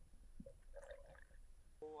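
Faint, muffled low rumble of water with a few soft gurgles and clicks, heard through an underwater camera's housing. A man's voice starts near the end.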